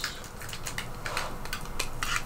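A few light clicks and rubbing as hands handle a small 3D-printed plastic part with a wire threaded through it.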